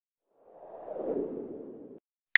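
A whoosh sound effect that swells in about half a second in, peaks, then fades and cuts off suddenly. It accompanies an animated subscribe-button graphic in an edited intro.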